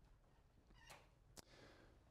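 Near silence: room tone, with a faint sound just under a second in and a single short click about one and a half seconds in.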